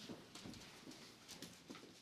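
Faint, scattered light knocks and scuffs of people moving about a quiet room, like footsteps on a wooden floor and folders being handled.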